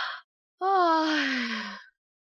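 A woman's breath in, then a long voiced sigh that falls steadily in pitch and fades out, about a second long.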